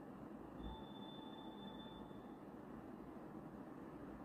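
Quiet room tone with a steady low hum; about half a second in, a thin, high electronic tone sounds for about two seconds and then stops.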